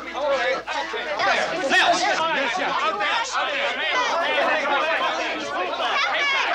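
A crowd of people all talking and calling out at once, many voices overlapping with no single one standing out.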